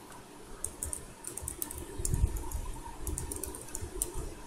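Computer keyboard being typed on: a scattered run of key clicks as a short word is entered.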